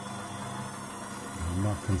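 Benchtop mini lathe running steadily, its chuck spinning with no cut being made, giving an even motor hum.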